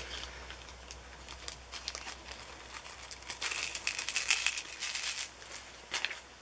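Small plastic bag of diamond-painting drills crinkling as it is handled and opened, starting about halfway through after a few quiet seconds.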